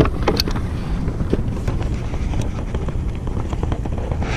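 Wind buffeting the camera's microphone, a steady low rumble, with a few faint clicks near the start.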